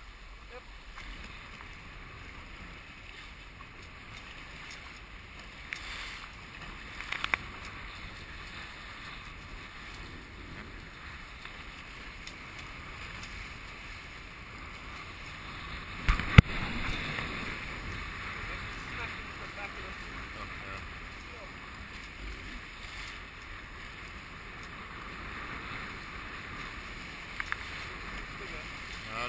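Steady wind and water noise aboard a small Hobie sailboat under way, with a sharp knock about 16 seconds in and a smaller click about 7 seconds in.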